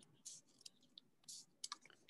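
Faint, scattered snips of scissors cutting paper: about half a dozen short, quiet clicks spread over the two seconds.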